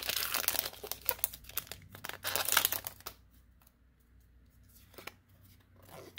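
Foil booster-pack wrapper being torn open and crinkled by hand, a dense crackling with sharp snaps for about three seconds, then near quiet with a small click or two as the cards are handled.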